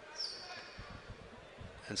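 Quiet arena hall ambience during a pause in a boxing bout, with a few soft, low thuds about a second in and a brief high squeak near the start. A man's commentary voice comes in just at the end.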